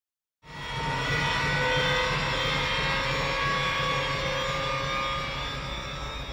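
A dense, steady drone of many held tones over a pulsing low rumble, coming in quickly about half a second in and easing slightly near the end: an ominous sound-design drone from a horror trailer's soundtrack.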